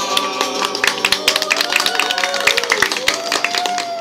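A group of people clapping their hands in quick irregular claps, with voices over the clapping.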